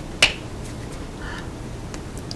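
A sharp click about a quarter of a second in, with a fainter one right at the start: the signer's hands striking together as she signs.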